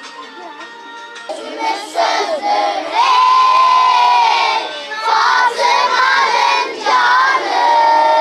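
A group of children singing an ilahi (Islamic hymn) together, loud and starting about a second in, with some notes held. Soft backing music is heard before they come in.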